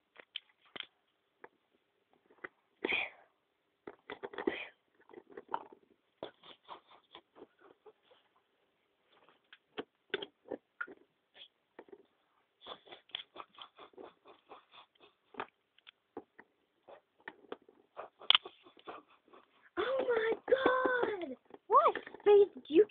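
Scattered light clicks and taps, irregular throughout, with a short voice sliding up and down in pitch about two seconds before the end.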